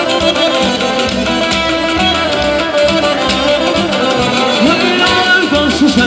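Live wedding band playing an instrumental passage of traditional Azerbaijani-style music, with a melody over a steady drum beat. The band is electric guitar, accordion, drum kit, hand drum and keyboard; the melody bends in pitch in the second half.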